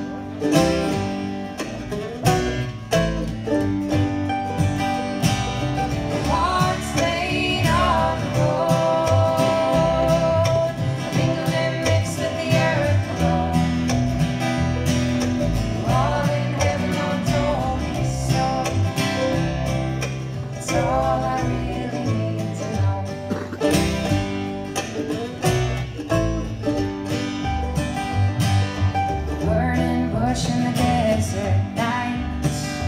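Live acoustic bluegrass-style string band: mandolin, acoustic guitar and upright bass playing, with several voices singing together in the middle.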